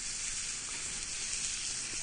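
Beef tenderloin steaks sizzling in a small cast-iron pan over a flame as they sear towards medium: a steady, even frying hiss.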